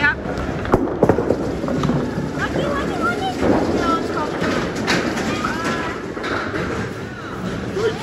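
Bowling alley din: a small bowling ball rolls down a wooden lane under steady chatter from several voices, with a couple of sharp knocks about a second in.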